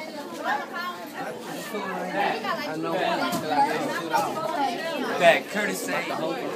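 Chatter of many students talking at once, their voices overlapping.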